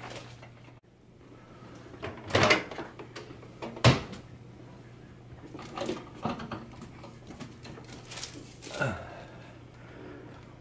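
Handling noises at a microwave oven: a thud about two and a half seconds in and a sharp click, the loudest sound, about four seconds in, then softer taps and rustles as things are moved in and out. A steady low hum runs underneath.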